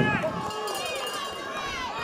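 People's voices in a busy hall: shouting around the ring, with one high-pitched shout held for about a second in the middle.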